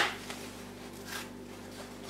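Faint rustle of a damp cardboard toilet-roll tube being unrolled by hand on newspaper.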